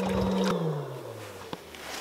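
A boat's small electric motor hum cuts off with a click about half a second in, then falls steadily in pitch as the motor winds down.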